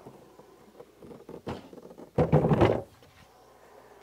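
The top cowling of a Johnson 115 outboard is being handled as it is lifted off the motor and set down. A short knock comes about a second and a half in, then a louder scuffing thunk lasting about half a second.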